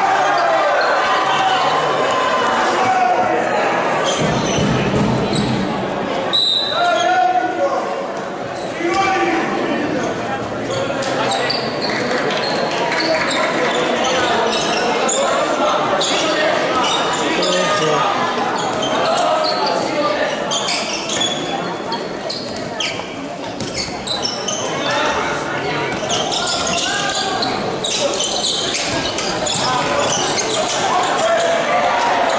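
Handball game in an echoing sports hall: the ball bouncing on the court with short knocks throughout, under players' and spectators' indistinct shouting.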